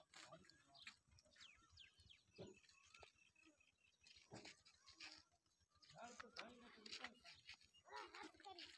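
Near silence with faint voices and a few faint animal calls.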